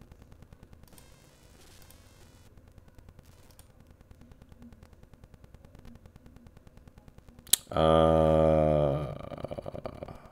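Mostly quiet, with faint, fast ticking. About seven and a half seconds in comes a sharp click, then a man's long, hesitating "uhh" held for over a second.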